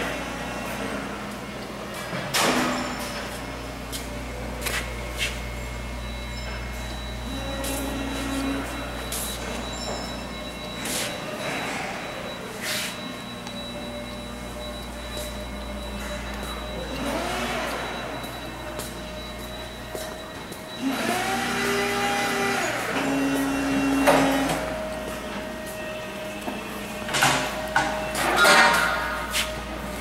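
Steady low hum of a large industrial hall, with scattered knocks and clanks and a few short pitched sounds near the middle and later on.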